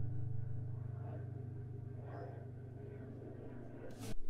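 Cort Core Series solid mahogany acoustic guitar's last chord ringing out and slowly dying away.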